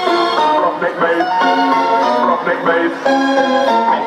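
Loud live electronic music over a concert sound system, heard from the crowd: layered melodic synth notes with short pitch glides, thin in the bass.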